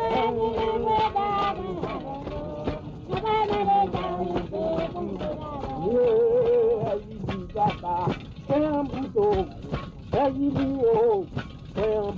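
Vodou ceremonial song in Haitian Creole: voices singing long, wavering notes over a steady beat of percussion strikes.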